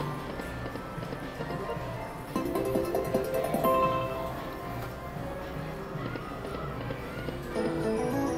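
Lock It Link 'Cats, Hats & More Bats' video slot machine playing its electronic music and sound effects as the reels spin, with a short run of rising chime tones a little past two seconds in and a held tone near four seconds as a small win pays out.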